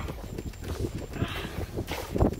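Irregular hollow knocks and taps on the boards and rail of a wooden pier as a rod and a fish are hauled up over the rail, with a brief swish about a second in.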